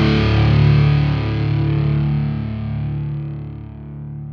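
Metallic hardcore recording: a distorted electric guitar chord held and left to ring out, fading steadily as its treble dies away first.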